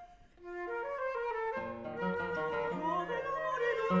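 Concert flute playing a melody of held notes that step from one pitch to the next, over plucked classical guitar. The passage starts after a brief pause, and a mezzo-soprano voice comes back in near the end.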